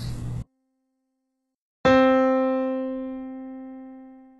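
A single note, middle C (Dó), struck on a digital piano about two seconds in and left to ring, fading slowly: the starting pitch given before singing the solfège exercise.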